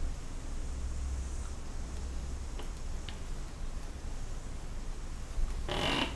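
Quiet studio room tone with a steady low hum and a couple of faint ticks. Near the end comes a short rustle of a cloth rag being handled.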